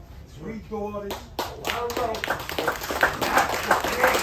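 Audience applause that breaks out about a second in and builds, with voices talking over it; a person speaks just before it starts.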